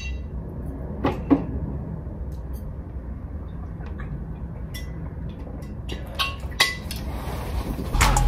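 A few light knocks and clinks from a glass liquor bottle and shot glasses being handled, two about a second in and two more near the end, over a low steady room hum.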